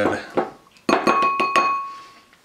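A spatula knocked a few times against the rim of a small glass mixing bowl, starting about a second in, leaving the glass ringing with a clear tone that fades away.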